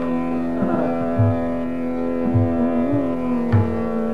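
Hindustani classical music in Raag Kedar: a long held melodic note that bends briefly about three seconds in, over a steady drone, with several deep tabla strokes.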